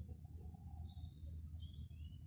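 Faint bird chirps, several short high calls from about half a second in, over a low steady rumble.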